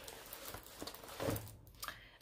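Faint, scattered rustling and crinkling of a diamond-painting canvas and its clear plastic cover film as it is handled and laid flat.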